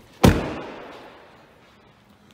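Door of a 2011 GMC Sierra 1500 pickup slammed shut once, a quarter second in, with the echo of a large hard-walled room dying away over about a second.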